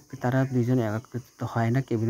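A man speaking in short phrases, with a faint steady high-pitched hiss underneath.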